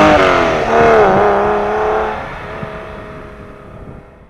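Porsche 996 Carrera's water-cooled flat-six engine pulling away. Its pitch dips and rises about a second in, then the note grows steadily fainter as the car drives off.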